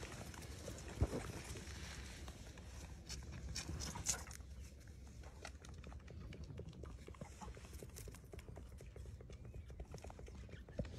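Young lamb suckling eagerly from a feeding bottle: a run of small sucking and smacking clicks, with a sharp thump about a second in and a smaller one near four seconds.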